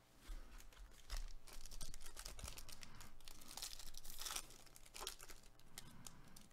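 A foil trading-card pack wrapper being torn open and crinkled by gloved hands, a run of crackling rips that starts about a third of a second in and fades out near the end.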